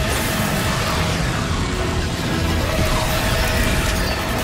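A film-style orchestral action score with a constant low rumble under it, and space-fantasy chase sound effects mixed in: a speeder engine and lightsaber hum.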